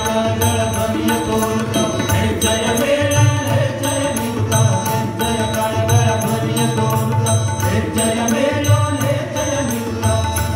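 Live Indian devotional singing of a chant, with held sung notes over harmonium, a tanpura drone and a hand drum keeping a steady beat.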